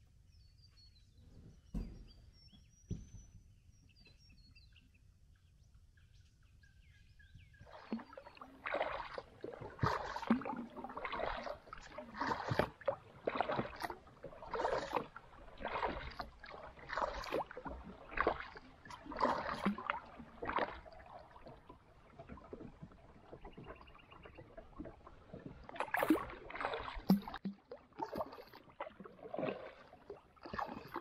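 Faint bird calls and a couple of soft knocks, then from about eight seconds in a double-bladed kayak paddle dipping and splashing in the river, about a stroke a second.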